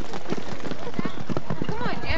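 A horse galloping on arena dirt during a pole-bending run, its hoofbeats coming as a quick, irregular run of strikes. People talk near the end.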